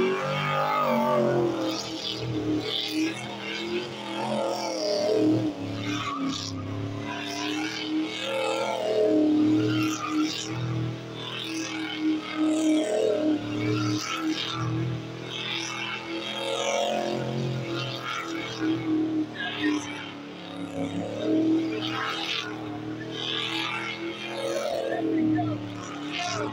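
Car engine held at high revs through a long tyre-smoking burnout. It revs up sharply at the start, then holds high, wavering as the throttle is worked.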